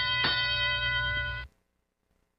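Field system's start-of-driver-control signal over the arena loudspeakers: a loud, steady horn-like tone that cuts off suddenly about one and a half seconds in.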